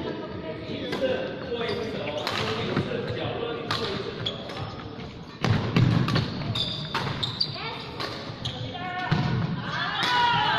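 Badminton rally in a large hall: repeated sharp racquet strikes on a shuttlecock, short high squeaks of court shoes on the wooden floor, and a heavy thud about halfway through as a player lunges.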